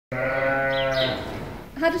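A sheep bleating once: a single long, steady call of about a second that fades away.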